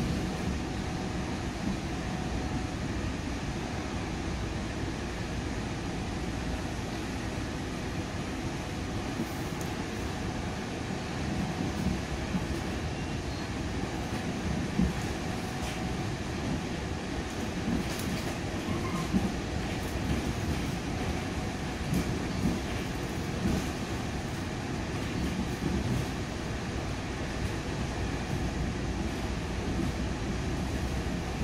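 Moving commuter train heard from inside the passenger car: a steady low rumble, with a few sharp clicks scattered through the middle.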